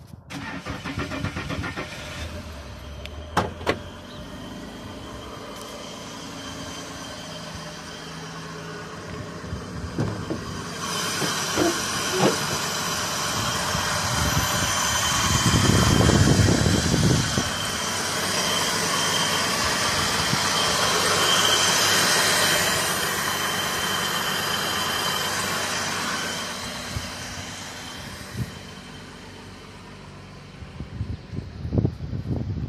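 Holden VX Commodore's 3.8-litre Ecotec V6 running, heard up close as the recorder moves around the car. It is loudest at the open engine bay, where the intake draws through a cone pod air filter.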